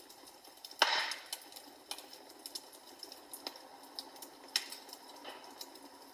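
Wood fire crackling quietly, with irregular sharp pops and clicks. The loudest pop comes about a second in.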